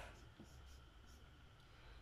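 A few faint strokes of a felt-tip marker drawing on a white surface, against near silence.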